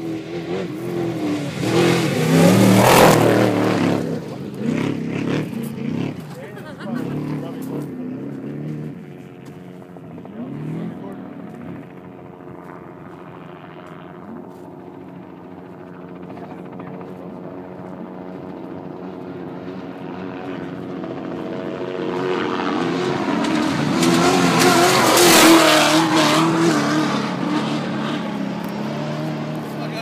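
Two trophy trucks' V8 engines racing past at full throttle on a dirt course, the first about three seconds in and the second about 25 seconds in. Each engine rises to a peak and fades as it goes by. Between the passes a steady engine drone builds as the second truck approaches.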